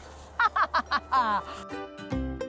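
A person laughing in a few short bursts, ending in a falling one. Background music with a steady bass line comes in near the end.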